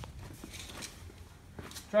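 Faint footsteps on a concrete floor, a few soft irregular steps over a low steady hum.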